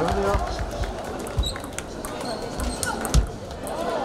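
Table tennis balls clicking off bats and tables: many sharp ticks from rallies on the near table and others around the hall, with a heavier low thump a little after three seconds, over voices in the hall.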